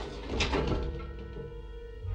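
Film score with a sharp click about half a second in, followed by steady electronic tones from a videophone connecting a call.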